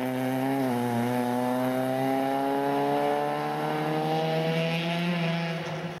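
Rally car's engine pulling hard as the car accelerates away. The pitch dips briefly under a second in, then climbs steadily until the sound fades at the very end.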